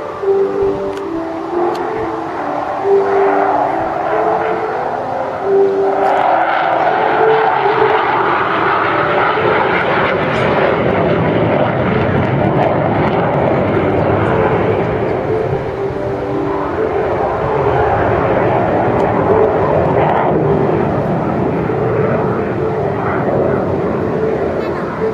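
Hawker Hunter F.58A jet flying past during a display, its Rolls-Royce Avon turbojet giving a loud, steady noise that swells about six seconds in and stays strong.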